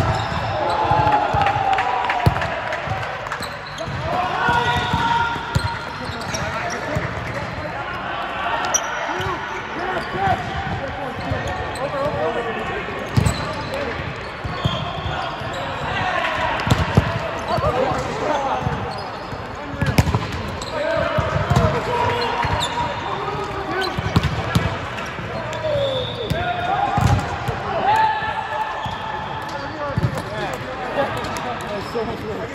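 Indoor volleyball play: sneakers squeaking on the sport court, sharp smacks of the ball being hit at intervals, and players' voices calling across the hall.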